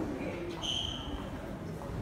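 Background murmur with faint voices, and one short high, steady tone about half a second in, lasting a little over half a second.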